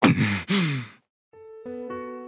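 A breathy vocal sigh from an anime character's voice, in two falling breaths during the first second. About a second and a half in, soft electric piano notes begin.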